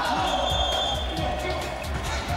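Futsal ball being kicked and bouncing on a wooden indoor court: a scatter of short knocks, with voices and music over it.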